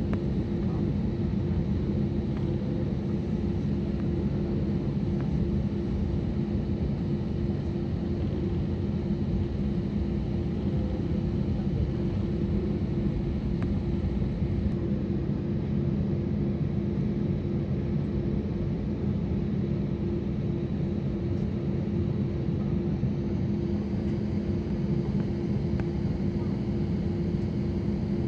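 Steady drone inside an airliner's passenger cabin as the plane taxis: jet engines at taxi power and cabin air, with a steady low hum.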